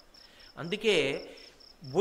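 A cricket chirping in a rapid, even pulse of high notes, heard through a pause in a man's speech, with a brief vocal sound from him near the middle.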